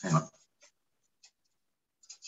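A brief voice-like sound at the start, then a few faint rustles and ticks of paper script pages being handled.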